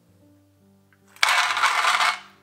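Nuts poured from a stainless steel measuring cup into a metal loaf tin, rattling against the tin for about a second near the end, over soft background music.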